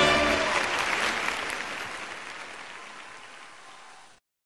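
A pit orchestra's final held chord ends about half a second in, and a large theatre audience's applause carries on and fades out steadily.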